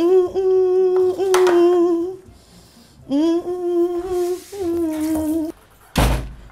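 A woman humming a tune in long held notes, two phrases with a pause of about a second between them. A short click sounds about a second and a half in.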